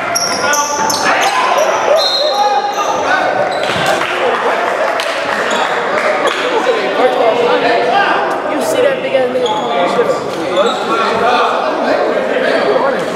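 Basketball dribbled and bouncing on a hardwood gym floor during play, with indistinct voices of players and spectators carrying through the echoing hall.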